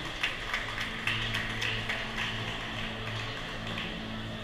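A run of light, irregular taps, about three a second, thinning out near the end, over a faint steady low hum.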